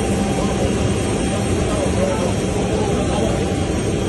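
Steady, loud jet aircraft engine noise with people's voices under it.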